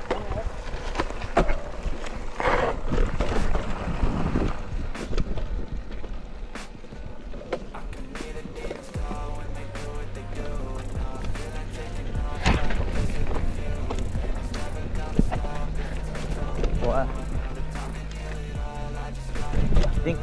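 Mountain bike riding fast over a dirt singletrack: tyres rolling over dirt and roots, with the bike rattling and knocking over bumps. From about halfway, background music with held bass notes runs under the trail noise.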